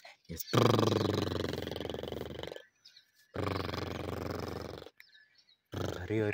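A horse nickering twice: two low, pulsing calls, each loudest at the start and fading, the first about two seconds long and the second a little shorter.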